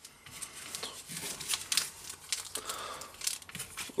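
Foil Pokémon booster pack wrappers crinkling as they are picked up and handled, a run of quick, irregular crackles.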